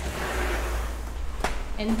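A cloth rubbed firmly over a plastic laminate sheet, pressing it down onto contact gel cement to work out air bubbles, with a short click about a second and a half in.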